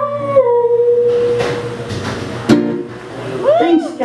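A woman singing a long held note into the microphone over acoustic guitar, with a guitar strum about two and a half seconds in, then a few short sliding vocal notes near the end: the closing line of the song.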